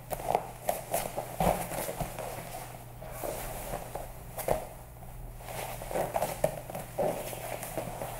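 Cotton jiu-jitsu gi cloth rustling, with irregular soft thumps of bodies and feet on foam training mats as one grappler swings underneath her partner's legs onto her back and then sits back up.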